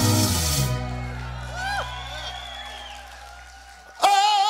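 A live band's held chord ringing out and fading away over a few seconds, the bass and keyboard tones dying down, with a short voice call about a second and a half in.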